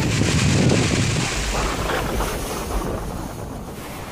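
Strong storm wind rushing and buffeting the microphone, loudest in the first couple of seconds and easing toward the end.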